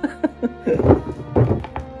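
A few dull knocks of heavy broken epoxy resin slab pieces being shifted and set down on a wooden workbench, over background music.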